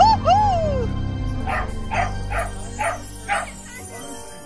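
A dog barking repeatedly, about two barks a second, after a few high rising-and-falling whines at the start. Background music plays underneath.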